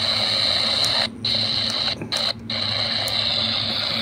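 Prunus J-125 DSP pocket radio's speaker giving out AM static and hiss as it is tuned from 550 to 560, the sound cutting out briefly three times as the tuner steps between frequencies.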